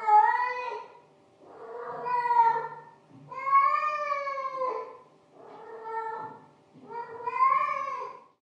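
A cat meowing over and over: five long, drawn-out meows, each a second or more, with short gaps between.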